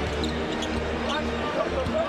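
Live arena game sound: a basketball being dribbled on the hardwood court over steady crowd noise.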